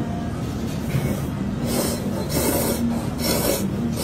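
A person slurping ramen noodles with chopsticks: a run of about four noisy sucking pulls in the second half.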